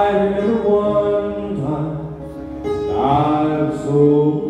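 A man singing a slow country ballad into a handheld microphone over musical accompaniment, drawing out long held notes that start afresh about one and a half and two and a half seconds in.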